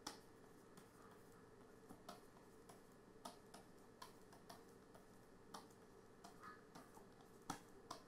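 Faint, irregular taps and clicks of a stylus on a drawing tablet as short strokes are drawn, roughly two or three a second, over near-silent room tone.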